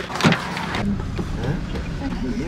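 A car running, heard from inside the cabin: a steady low rumble of engine and road noise, after a brief sharp sound near the start.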